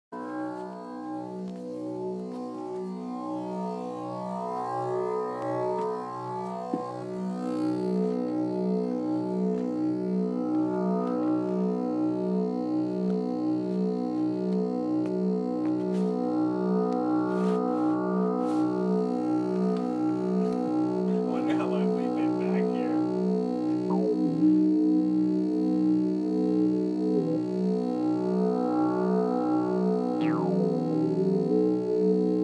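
Electronic synthesizer music from a Korg Kaossilator and a Teenage Engineering OP-1: a pulsing synth drone of stacked tones throbbing at a steady rhythm, swelling in over the first several seconds. A few brief high blips and glides come past the middle, and a steady held tone joins near the end.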